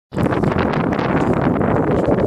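Wind buffeting the microphone: a loud, steady rush of wind noise.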